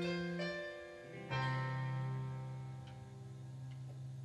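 Stage keyboard playing piano-voiced chords; a final low chord is struck about a second in and left to ring, slowly fading as the song ends.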